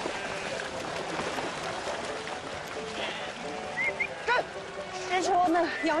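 A large flock of sheep on the move, hooves splashing and trampling through shallow water, with a couple of short bleats in the second half. Background music plays underneath.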